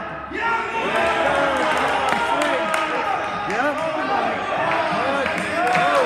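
Several people's voices talking and calling out in a large gym hall, overlapping, with scattered light thumps of a gymnast's hands striking the pommel horse during his routine.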